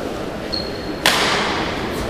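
A badminton racket strikes the shuttlecock on the serve about a second in: a sharp crack that rings on in the hall. A fainter second hit, the return from the far end of the court, comes near the end.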